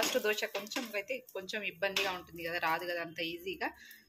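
A woman talking steadily, with no other sound standing out.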